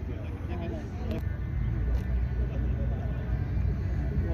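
Low steady rumble of a car engine running nearby, with faint voices of people talking in the background.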